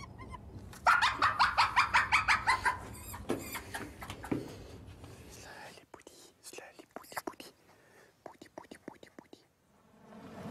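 Hyena cub calling: a quick run of high squeals, about five a second for two seconds, then a few single calls. Faint scattered clicks and rustles follow.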